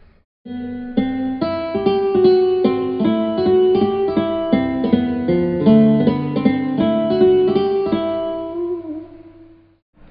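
A short single-note melody of sampled plucked-string notes played from the MIDI Fretboard iPhone app and being recorded as banjo tablature in Guitar Pro 6. The last note wavers in pitch and rings out.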